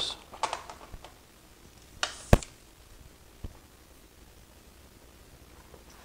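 Mostly quiet room tone, broken about two seconds in by a short scuff that ends in a sharp click, then a softer click about a second later.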